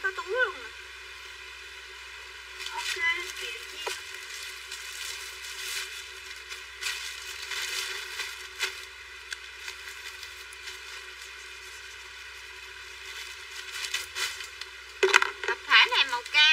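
Clothes being handled and shaken out, rustling and crackling in short bursts through the middle, with brief bits of a woman's voice at the start and again near the end.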